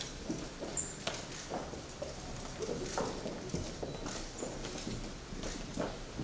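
Footsteps of hard-soled shoes and boots on a polished stone floor as several people walk past in a line: an irregular run of sharp clacks, about two a second.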